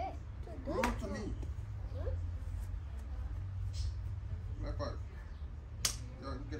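A few short, wordless vocal calls from a man and a small child, over a steady low rumble, with one sharp snap near the end.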